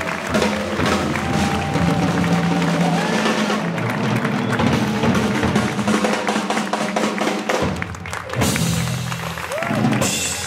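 Live swing jazz band (saxophone, double bass, piano and drums) playing, with people clapping along by hand.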